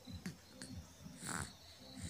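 A short breathy huff about a second and a quarter in, over a faint steady high whine and a low rhythmic pulsing in the room.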